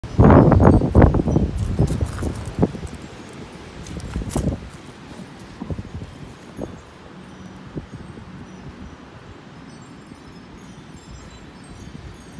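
A quick run of loud knocks and thumps in the first second and a half, then a few scattered knocks about two and four seconds in, dying away to a faint background.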